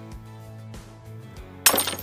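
Background music with faint clinks of a spoon stirring sauce in a glass bowl, then a sudden loud burst of noise near the end.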